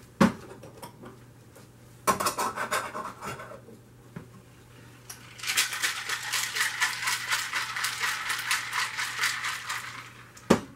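A sharp knock, then a short clatter about two seconds in. From about five and a half seconds on, ice rattles fast and evenly inside a stainless steel cocktail shaker as it is shaken hard.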